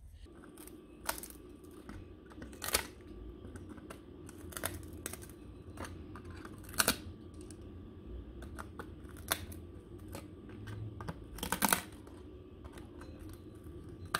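Quiet handling noise: a few scattered clicks and light rustles over a faint steady hum.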